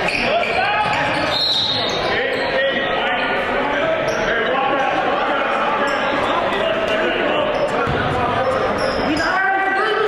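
Live game sound in a school gymnasium during a basketball game: many voices calling out over one another, with the ball bouncing on the hardwood floor, echoing in the hall.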